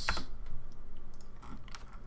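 A few computer keyboard keystrokes and clicks, the sharpest right at the start and the rest faint and spaced out, over a low steady hum.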